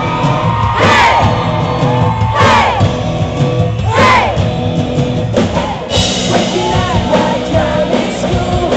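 Live pop-rock band playing loud amplified music, with electric guitar, bass guitar and a sung vocal. Three times in the first half the voice slides downward in pitch, about a second and a half apart.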